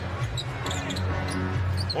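A basketball being dribbled on a hardwood court, sharp bounces at irregular intervals, over steady arena background noise.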